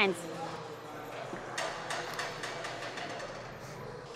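Low gym background noise with faint voices, and a few soft clicks about one and a half to two seconds in.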